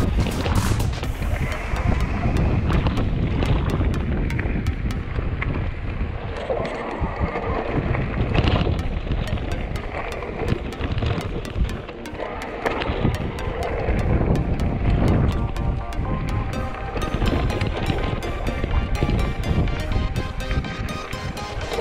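Background music over wind buffeting the microphone and the rattle of a mountain bike running fast down a rough gravel and rock trail, with many small clicks and knocks throughout.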